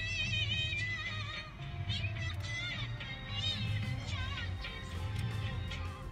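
Indian film song: a high female singing voice with vibrato over a steady, pulsing low beat.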